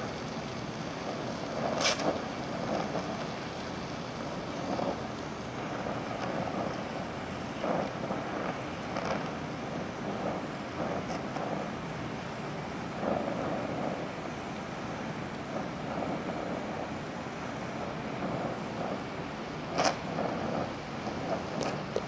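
Oxy-acetylene torch flame (DHC2000, #2 tip at low pressure) hissing steadily while it melts a pure cast iron filler rod into a cast iron intake manifold. A few sharp pops break in, about two seconds in and twice near the end.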